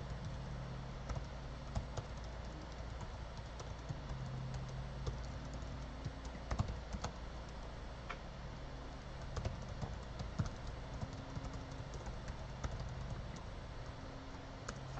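Typing on a laptop keyboard: a run of quick, irregular, fairly faint key clicks.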